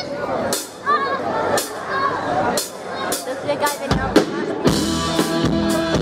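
Four evenly spaced sharp clicks about a second apart, a drummer's count-in, then a bass-drum hit and the rock cover band coming in with electric guitar, bass, keyboard and drums about three-quarters of the way through.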